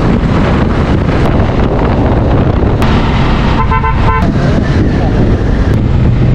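Strong wind noise on the microphone over a Bajaj Dominar 400 motorcycle running on the road. There are two short blasts of a vehicle horn a little past halfway.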